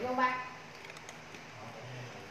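A brief vocal sound at the start, then quiet handling of a glass perfume bottle and its spray-pump top with a few faint small clicks about a second in.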